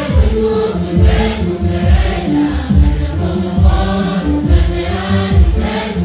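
A church congregation singing a hymn together, led by singers on microphones through the sound system, over a steady low beat.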